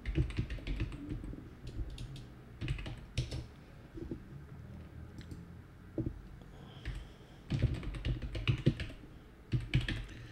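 Typing on a computer keyboard: irregular clusters of key clicks as a file name is entered.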